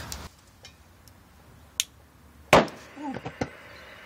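A faint click, then about a second later a single loud pop as hydrogen gas at the stove burner ignites with a flashback.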